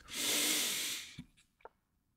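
A man taking a deep breath in: a hissing inhale lasting about a second, followed by a couple of faint clicks.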